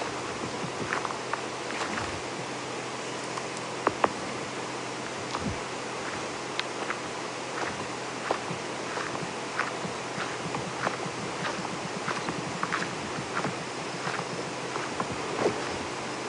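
Footsteps on dry ground, leaf litter and twigs at a steady walking pace, under two light steps a second, over a steady background hiss.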